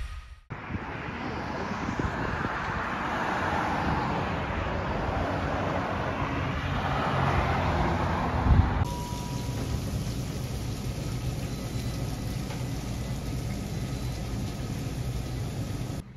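Road traffic passing, the tyre and engine noise swelling and fading twice. About nine seconds in it cuts abruptly to a steadier, quieter hiss.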